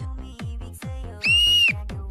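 Electronic background music with a fast beat of low, dropping thumps, about four a second. A little past the middle comes one high, steady whistle tone lasting about half a second.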